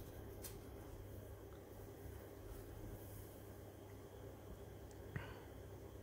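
Quiet room tone of a small room, with a faint short knock about five seconds in.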